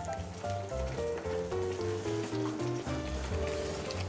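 Background music: a melody of short notes stepping downward over a steady bass line.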